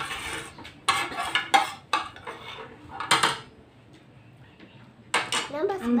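A metal spoon scraping and clinking on a ceramic plate, about six short strokes over the first three seconds, then quiet until a short hum of a voice at the very end.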